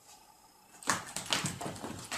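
A dog's sneaker-clad paws tapping and scuffing on a hardwood floor: after a quiet start, an irregular clatter of sharp taps begins about a second in.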